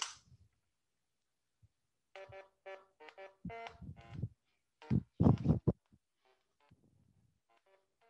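A simple computer-generated tune: short electronic notes, each a plain pitched tone, played one after another with rests between, produced by an Elixir music DSL and sent to an audio player as raw samples. It starts about two seconds in, after a near-silent pause, with a few deeper, louder sounds near the middle and quieter notes near the end.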